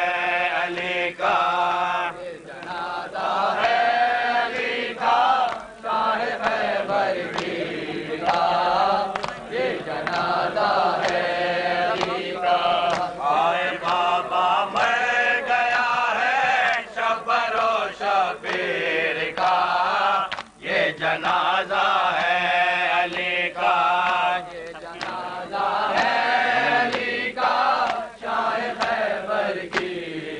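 Men chanting an Urdu noha (Shia mourning lament) together, the lead voices carried over a microphone, with regular chest-beating slaps (matam) keeping time throughout.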